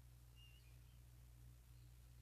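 Near silence: room tone with a low steady hum.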